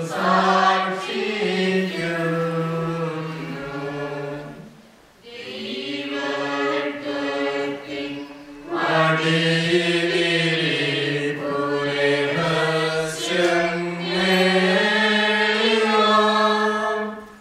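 Syro-Malankara liturgical chant of the Holy Qurbono: long held sung notes that step between a few pitches, with short breaks about five and eight and a half seconds in.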